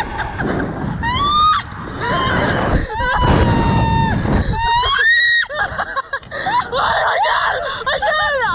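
Two riders screaming while being flung about on a slingshot (reverse-bungee) ride: several high, rising screams, one held steady for about a second near the middle, over a constant low rumble of wind on the microphone.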